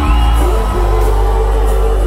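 A live folk-rock band with acoustic guitar, drums and strong bass plays amplified through a concert sound system, with singing holding long notes.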